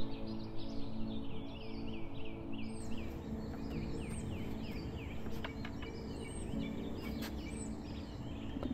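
Garden birds singing, a steady run of repeated short chirps several times a second, over soft sustained background music that fades about three seconds in and comes back near the end.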